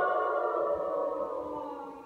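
Mixed choir holding a sustained chord that gradually dies away, its pitch sliding slightly lower as it fades.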